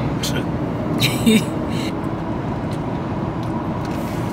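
Steady road and engine noise inside the cabin of a moving vehicle, with a brief voice sound about a second in.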